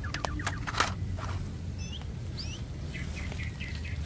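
A few clicks and knocks of plastic toy cars being set into a plastic basket of toys in the first second. Then a few short, high bird chirps around the middle.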